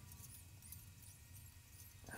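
Near silence: a low steady hum with faint, short high-pitched squeaks scattered throughout.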